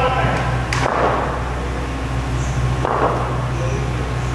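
Indistinct, echoing voices of players calling across a large hall, over a steady low hum, with one sharp tap about three-quarters of a second in.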